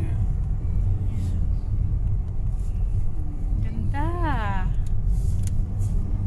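Steady low rumble of a car driving along a country road, heard inside the cabin. About four seconds in, one short voice sound rises and falls in pitch.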